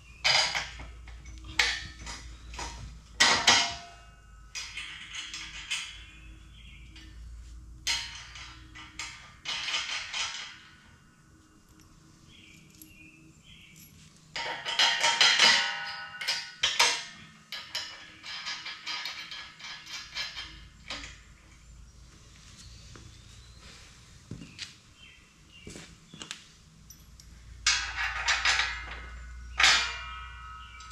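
Steel parts and hand tools clinking and clanking on a tractor loader's fork and hay-spear frame as its mounting bolts are worked: irregular knocks, some ringing briefly, with a quieter lull about midway.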